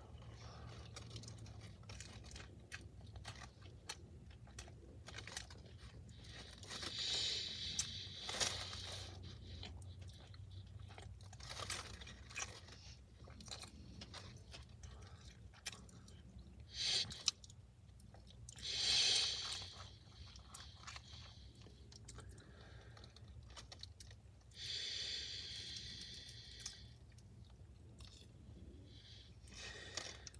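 Close-up chewing of a crispy breaded chicken sandwich: moist crunchy bites and mouth sounds, with a few louder crunchy bursts spread through.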